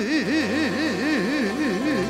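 Male singer holding one long note with a wide, fast vibrato, the pitch swinging up and down about four times a second, over live band accompaniment with a steady bass.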